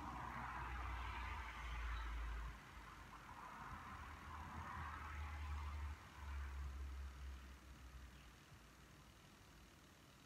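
Faint, slow, deep breaths: a soft hiss of air that swells and fades a few times, over a low rumble that comes and goes.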